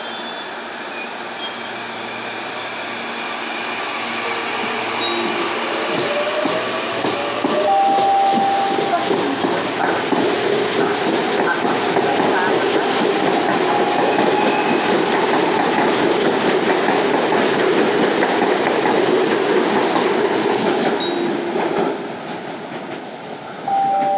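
Electric multiple-unit commuter train (ViaMobilidade Frota C) pulling away from a station. Its traction motors whine, rising in pitch as it accelerates over the first several seconds. Then the wheels rumble and clack over the rails, louder as the cars pass, until the sound drops away near the end as the last car leaves.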